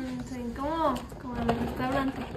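A voice talking softly, its pitch rising and falling, with a few faint light clicks of a spoon stirring a drink in a plastic pitcher.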